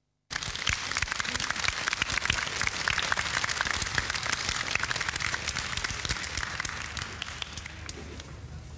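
Audience applauding, starting abruptly after a brief silence and going on as a dense, steady clapping that eases a little near the end.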